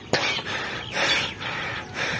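Birds calling against open farm-field background noise.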